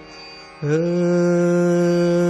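Male Hindustani classical vocalist singing raga Bhimpalasi without words over a tanpura drone. The voice breaks off for about half a second at the start, leaving only the faint drone. It then slides up into a long, steady held note.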